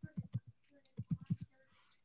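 Computer keyboard typing: two short runs of keystroke clicks, one at the start and one about a second in.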